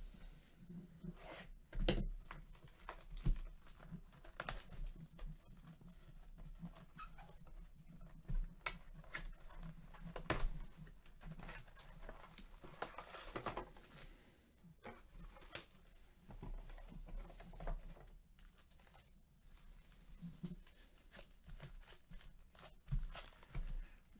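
Plastic wrap and tape on a sealed cardboard hobby box of trading cards crinkling and tearing as it is opened by hand, with foil card packs rustling as they are handled. The sound is a faint, irregular string of crackles and small taps.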